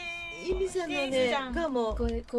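Speech only: a high-pitched voice talking in long, drawn-out, gliding syllables.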